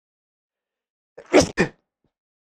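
A man sneezing once, a short sharp burst about a second and a quarter in.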